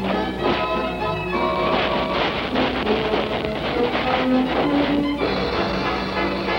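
Cartoon background music: a lively tune of short changing notes over frequent percussive strikes.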